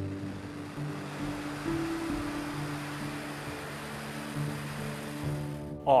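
Steady rushing roar of the Nuri rocket's engines at liftoff under background music of long, held notes; the roar cuts off suddenly near the end.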